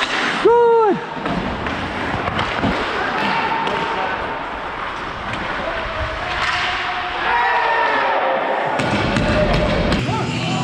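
Ice hockey play at the net: skates and sticks on the ice with knocks and thuds. About half a second in comes one loud, short shout whose pitch rises and falls, and players' voices call out again from about six seconds in.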